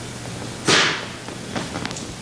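A single sharp smack about two-thirds of a second in, dying away quickly, followed by a few faint taps.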